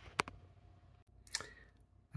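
Two small clicks about a second apart as the opened mini PC's parts are handled, over a quiet room.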